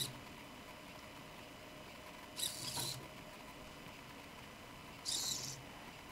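Hobby servo motors in a robot leg whirring in two short spurts, one around two and a half seconds in and one near the end, after a click at the start: the servos twitching as the board loses and regains power while firmware loads.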